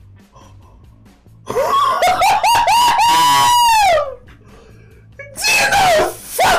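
A man yelling in excitement: a run of short high shouts that rise into one long held cry, which falls away. Then, near the end, more loud vocalising with laughter, over faint background music.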